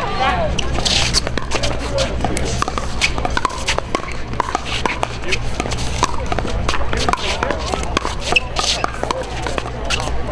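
Pickleball paddles striking a hollow plastic ball in a doubles rally: a string of sharp pops, roughly one every second or so, some of them from neighbouring courts. Faint voices and shoe scuffs are heard underneath.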